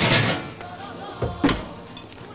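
Kitchen handling sounds at a worktop: a brief rustle at the start, then two short sharp knocks about a second and a half in, as items are set against the glass baking dish and wooden board.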